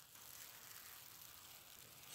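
Near silence: only a faint, steady hiss.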